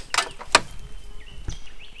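Two sharp clicks about a third of a second apart as a driving-light wiring harness with plastic plug connectors is handled, followed by a faint bird call.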